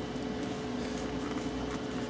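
Steady, even background hum with a faint steady tone running through it, inside a vehicle's cabin.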